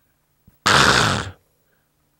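A man's single harsh, raspy grunt, "keu!", lasting under a second and starting just after half a second in, voiced as an angry, disgusted exclamation.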